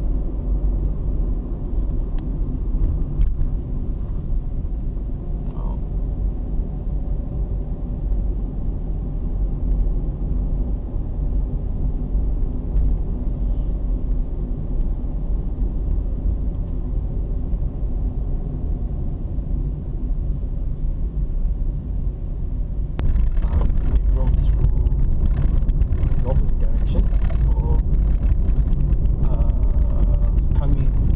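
Car driving, heard from inside the cabin: a steady rumble of road and engine noise. About 23 seconds in, the sound turns louder and rougher, with added hiss and rattle.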